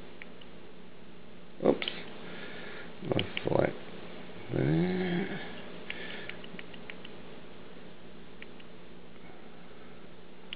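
A person sniffing and giving a short wordless murmur, with faint clicks as the buttons of a handheld MP3 player are pressed, over a steady low hum and hiss.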